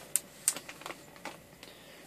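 Plastic bags crinkling and clicking as hands handle bagged parts in a cardboard box: a few sharp crackles in the first second or so, then only faint rustling.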